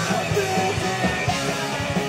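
A rock band playing live on electric guitars and bass, loud and continuous, with regular sharp hits keeping the beat.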